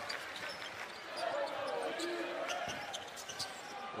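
A basketball being dribbled on a hardwood arena court, with short taps, over the steady murmur of a large crowd with scattered voices.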